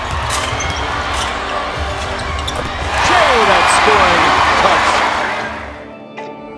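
Basketball arena crowd noise under a possession, with the ball bouncing on the hardwood. The crowd swells into cheering about three seconds in as the basket drops, then cuts off abruptly at the end.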